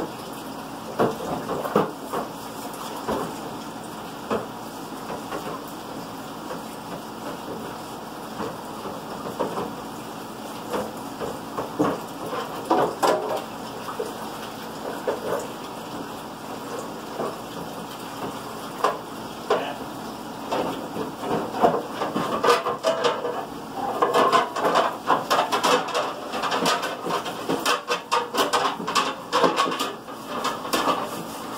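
Dishes being washed by hand in a kitchen sink: water splashing while dishes and utensils clink and knock against each other and the basin. The clatter gets busier and louder over the last several seconds.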